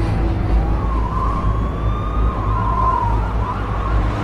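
Recorded music in a sparse passage: a wavering, siren-like tone slides up and down over a steady deep bass.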